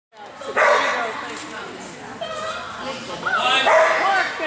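Dog barking and yipping repeatedly in short, high calls, with voices in the background.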